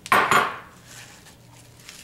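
Frozen-solid mango slices dropped into a blender jar: a short, hard clatter of two knocks in the first half second.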